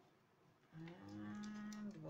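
A woman's voice holding one long, steady hummed note for about a second, starting a little way in and rising slightly in pitch near its start.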